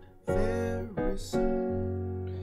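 Piano playing gospel chords in F-sharp: a few chords struck in turn and held with the sustain pedal, ending on an F-sharp major chord.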